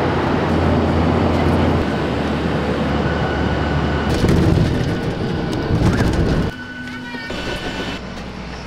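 Steady drone of a jet airliner's cabin in flight, engine and airflow noise, which cuts off about six and a half seconds in to a quieter background.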